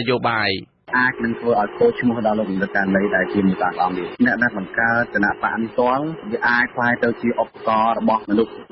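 Speech only: a radio news broadcast voice talking steadily, with a short break just under a second in.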